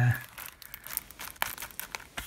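Plastic shrink-wrap on a sealed Blu-ray case crinkling as it is handled, with one sharp click of the case about one and a half seconds in.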